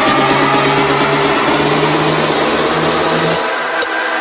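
Electronic dance music with sustained synth chords. About three and a half seconds in, the bass and the highest sounds drop out, leaving only the middle of the mix for a moment before the next section.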